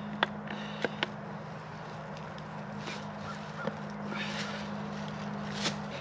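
A steel T-post being rocked against a 2x4 lever with a metal plate clipped onto it: a few sharp clicks and some rustling over a steady low hum. The post is not budging; it is set too deep for the lever to lift it.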